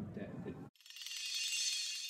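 A voice is cut off abruptly about a third of the way in, and a thin, high rattling whir starts at once and swells, with nothing in the low range.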